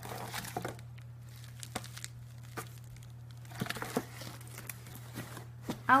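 Bubble wrap crinkling and a cardboard shipping box rustling and tapping as it is handled and closed, in scattered short bursts, busiest at the start and again past the middle.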